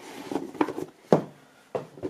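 A cardboard box being handled on a wooden tabletop: its lid is put back on and the box is moved off the table. There are a few light knocks and rubs, the sharpest a little over a second in.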